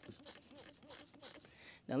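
A hand sprayer's stream of vinegar-and-salt weed killer hitting a concrete crack, a faint hiss in the first half-second or so, followed by a faint low murmur of voice.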